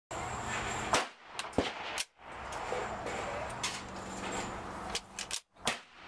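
Gunfire at an outdoor shooting range: a series of sharp cracks over a steady background hiss, the loudest about one and about one and a half seconds in and a quick cluster near the end.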